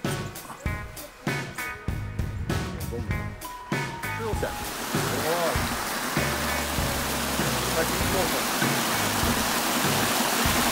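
Background music with a steady beat ends about four and a half seconds in. It gives way to the steady rush of a small mountain stream spilling over rocks.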